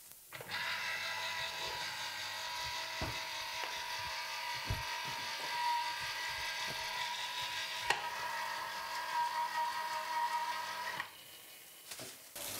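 A small electric motor runs steadily with an even whine, then cuts off abruptly about a second before the end; a few light knocks sound over it.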